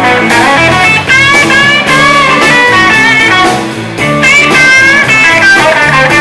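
Live blues band playing: an electric guitar plays a lead line of bent notes with vibrato over bass guitar and drums.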